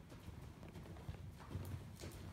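Hoofbeats of a ridden sorrel overo paint gelding on the soft dirt footing of an indoor arena: a faint, uneven string of dull, low thuds as he moves under saddle.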